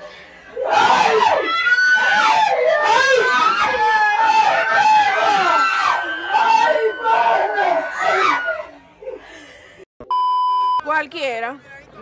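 A group of women screaming, shrieking and laughing over one another in excitement. Near the end the sound cuts, a steady bleep tone sounds for under a second, and talking resumes.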